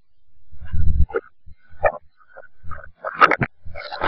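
A girl's voice and movements played backwards, as short garbled vocal sounds that the speech recogniser cannot turn into words. Two low rumbles swell up and stop abruptly near the start and about a second in, the shape of knocks or microphone bumps run in reverse. The vocal bursts grow louder toward the end.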